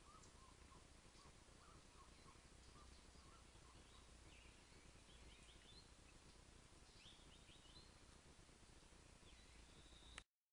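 Faint outdoor ambience with birds calling: a run of short repeated chirps in the first couple of seconds, then higher chirps about four and seven seconds in.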